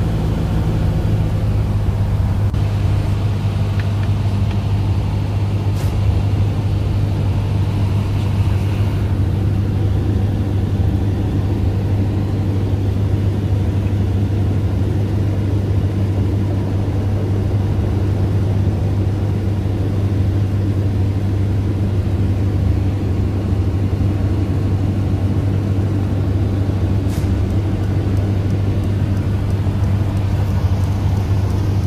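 Steady cabin drone of a light high-wing airplane's piston engine and propeller in cruise flight: a loud, constant low hum that holds the same pitch throughout.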